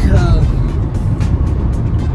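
Steady low rumble of road and engine noise inside a car cabin at highway speed.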